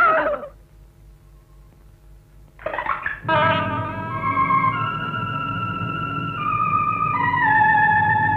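Film background score: after a short lull, music comes in about three seconds in with sustained, held melodic notes that step up and down in pitch, in a wavering, theremin-like timbre.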